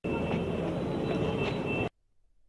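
Busy street ambience: a dense, steady wash of traffic noise with a thin, steady high tone running through it. It starts abruptly and cuts off suddenly near the end.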